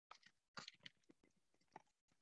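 Near silence, with a few faint, short clicks about half a second in and one more near the end.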